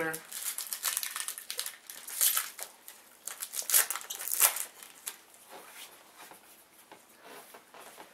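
Foil trading-card pack wrapper crinkling and tearing as it is opened, with a few sharp loud crackles in the first half, then softer rustling as the cards are handled.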